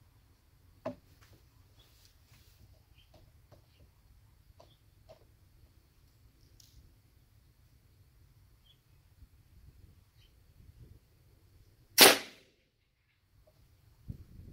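Custom .45-calibre big-bore PCP dump-valve airgun firing one shot, a single sharp report with a short tail about twelve seconds in, its air chamber charged to about 1500 psi and dumped in one go. Before it, a sharp click about a second in and a few faint clicks of handling.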